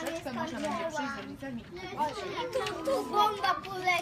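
Several young children talking at once, their high voices overlapping into a busy chatter with no single speaker standing out.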